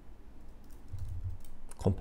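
A few quick keystrokes on a computer keyboard, typing a short word.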